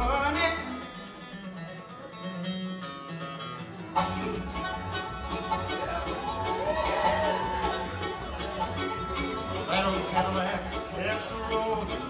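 Acoustic bluegrass band playing live, with banjo, mandolin, fiddle, guitar and upright bass. For the first few seconds the texture is lighter, with no bass. About four seconds in, the full band comes back in, the upright bass and rapid banjo and mandolin picking driving a steady beat.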